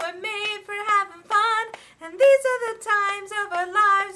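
A woman singing solo and unaccompanied, holding notes with vibrato, with a short pause for breath about two seconds in.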